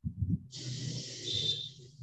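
A person breathing out a long hiss close to the microphone, lasting a little over a second, with a faint whistling tone near its end.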